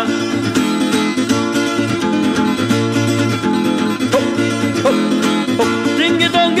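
Calabrian tarantella folk music in an instrumental passage between sung verses: a quick run of notes over a steady bass line, with no singing.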